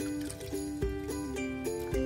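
Background music: held melodic notes over a soft, steady beat about once a second.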